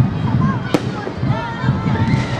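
Aerial fireworks bursting in the sky, with one sharp bang about three quarters of a second in.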